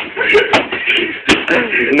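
Pillows striking people in a pillow fight: a few hits, the sharpest about a second and a quarter in, with shouting voices between them.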